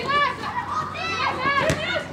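High-pitched voices of women footballers shouting and calling to each other across the pitch during play, several at once, with one sharp knock near the end.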